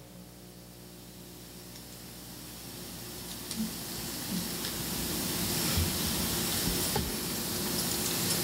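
Steady hiss over a low electrical hum, slowly growing louder, with a few faint ticks.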